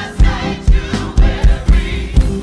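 Gospel choir singing over music with a heavy beat about twice a second.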